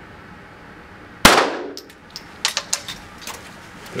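A single .22 caliber gunshot about a second in, with a short echo of the hall trailing after it, followed by a few light clicks.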